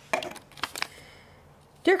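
Paper and cardboard rustling as a printed sheet is pulled out of a cardboard box: a few brief crinkles in the first second, then quiet handling.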